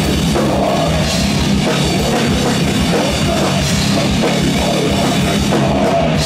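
A rock band playing live: electric guitar, bass guitar and a drum kit with cymbals, loud and unbroken.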